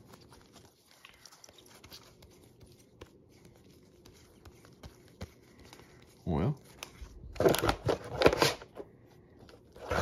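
Rigid plastic card toploaders clicking and clacking against each other as a stack of trading cards is flipped through by hand. A burst of louder, quick clacking comes about seven to nine seconds in.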